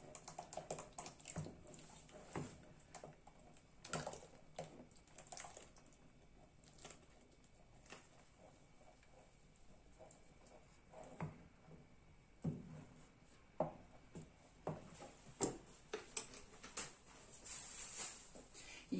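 Wooden spoon stirring soup in a stainless steel pot, with faint, irregular light knocks and scrapes against the pot, sparser for a few seconds in the middle.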